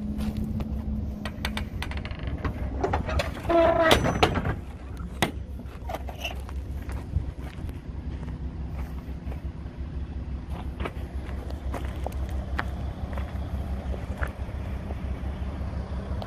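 Outdoor background rumble with scattered short crunches and clicks of footsteps on gravel. About three and a half seconds in comes a brief pitched sound, the loudest thing here.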